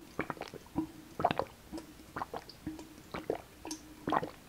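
Close-miked gulping: a person swallowing thick tomato juice in a quick, irregular series of gulps, about two or three a second, while chugging it from a large glass.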